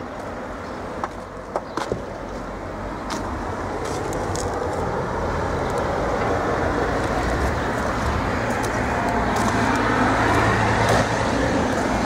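Road traffic noise from passing cars, growing steadily louder as a vehicle draws nearer toward the end, with a few faint clicks in the first few seconds.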